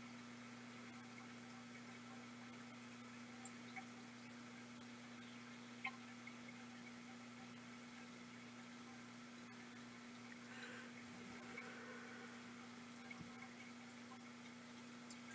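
Near silence: room tone with a steady low electrical hum and a few faint scattered clicks.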